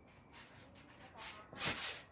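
Backyard trampoline creaking and swishing as someone starts to bounce on it: short rubbing swishes, getting louder, the biggest near the end and coming about once a second.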